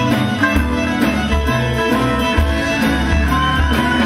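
Live western swing band playing an instrumental passage: a fiddle lead bowed over electric guitar, with low bass notes moving underneath.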